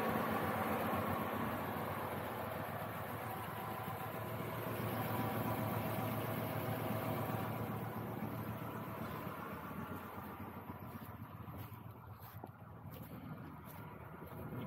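Audi 2.3-litre AAR five-cylinder petrol engine idling steadily, so quiet it can barely be heard; the level eases off in the second half. Freshly rebuilt, it runs smoothly.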